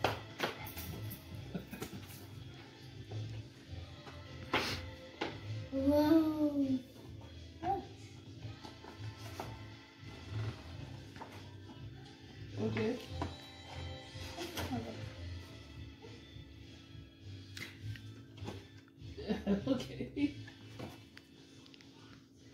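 Background music with a steady low beat, with a few short snatches of voice and scattered light clicks of paper being handled.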